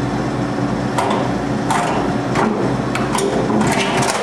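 A snack vending machine's delivery bin rattling and knocking, about five times at even spacing, as an arm reaches in and gropes for a snack, over a steady electrical hum.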